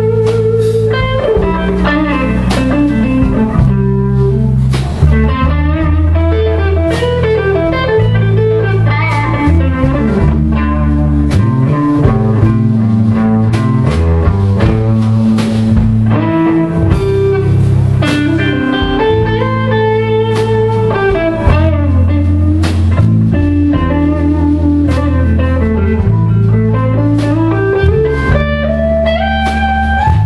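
Hollow-body archtop electric guitar playing a bluesy instrumental solo, with note runs climbing and falling over sustained bass notes and steady drum hits from a live band.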